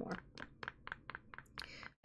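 Spoon stirring a glue-and-glitter slime mixture in a bowl: faint, quick, irregular clicks and taps, about ten in two seconds.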